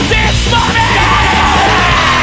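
Japanese thrashcore song: shouted, yelled vocals over distorted guitar, bass and drums.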